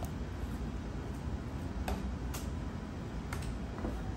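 A few sharp clicks over a steady low rumble: a wooden spoon knocking against a metal stockpot as pieces of raw alligator meat are pushed down into thick simmering sauce.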